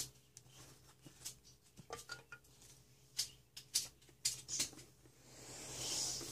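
Hands handling trading cards and a metal Pokémon card tin: scattered light clicks and taps, then a rustling scrape that swells near the end as the tin is slid and picked up.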